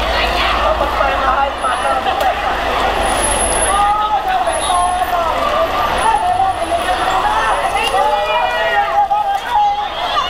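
A Ford pickup truck's engine running as it rolls slowly past close by, with several people shouting and cheering over it.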